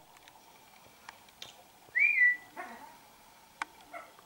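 Blue-fronted amazon parrot giving one short whistle about two seconds in, rising and then holding level, with a few faint clicks around it.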